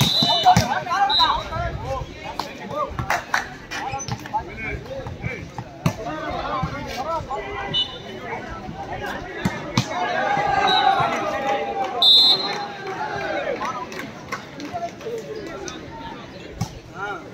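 Players and spectators shouting and calling during a volleyball rally, with sharp smacks of the ball being hit. Short high whistle blasts sound several times, the loudest about twelve seconds in.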